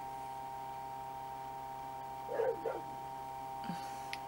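A dog barks twice in quick succession a little after halfway, over a steady electrical hum.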